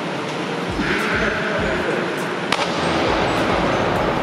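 A diver jumping off a 10-metre platform and hitting the pool water: a steady rushing hiss that grows louder for a couple of seconds, then a single sharp splash of water entry about two and a half seconds in.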